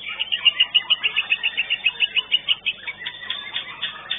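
White-rumped shama (murai batu) singing: a fast run of sharp, repeated high notes for nearly three seconds, then looser, varied phrases.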